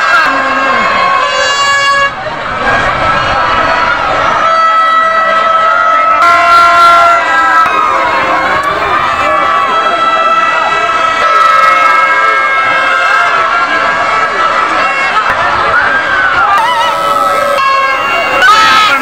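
Many horn-like tones sound at once and overlap, each held steady for a second or more with slight wavers in pitch, over the noise of a crowd.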